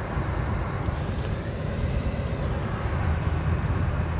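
Wind buffeting a handheld phone's microphone outdoors: a steady, rough low rumble with a hiss above it.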